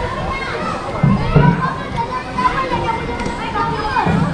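Children playing and calling out at a swimming pool, many voices overlapping, briefly louder about a second in.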